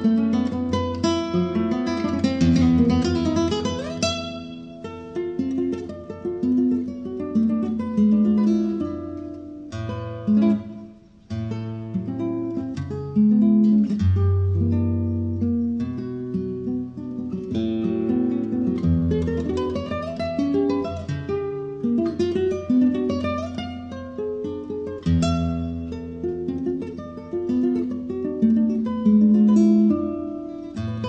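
Solo nylon-string acoustic guitar played live, fingerpicked melody and chords over moving bass notes, with a brief pause about eleven seconds in.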